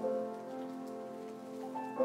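Slow keyboard music: held chords, with a new chord coming in at the start and again near the end.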